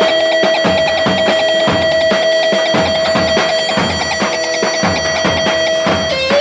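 Live Kurdish halay music: an electric bağlama (saz) holding one high note steady, with a drum beat keeping regular time underneath.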